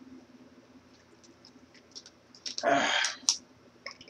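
A plastic water bottle being handled and opened: scattered small clicks as the cap is twisted, then a short, louder crackle of plastic about three seconds in as the bottle is raised to drink.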